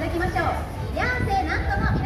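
Several people's voices chattering at once, children's voices among them, over a steady low rumble.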